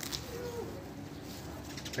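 A dove cooing faintly in the background, one low call about half a second in, over quiet outdoor ambience.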